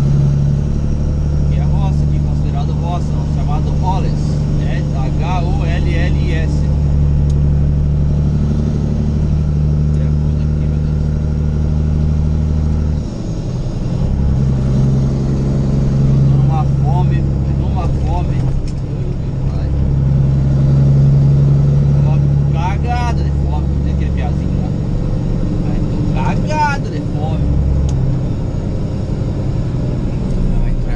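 Semi truck's diesel engine droning steadily, heard from inside the cab while driving. The drone drops off briefly about 13 seconds in, as at a gear change or easing off, then builds again.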